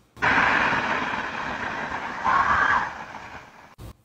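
Doorbell camera recording played back with its gain turned up: a loud, steady hiss of background noise, with a faint scream, taken for a woman screaming the name Bella, rising out of it for under a second about two and a half seconds in.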